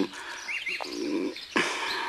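Small birds chirping in the background during a pause in the dialogue, with two short quick upward chirps about half a second in. A brief soft hiss comes near the end.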